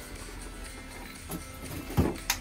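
Background music with a steady tone, with a couple of faint knocks from kitchen handling, about a second and a half in and again near the end.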